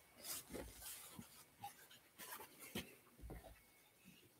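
Faint rustling of cloth and paper with a few light knocks as altar linens and small items are handled on the altar.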